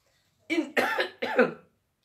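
A man coughing and clearing his throat: three short voiced bursts within about a second.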